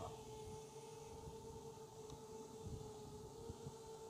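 Faint, steady hum of a DJI Mavic Air quadcopter's propellers, two even tones with no change in pitch, over a low, uneven rumble.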